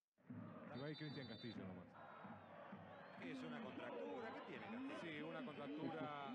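Faint football-stadium crowd chanting and singing in the stands, heard through old TV broadcast audio. A short, steady high whistle sounds about a second in.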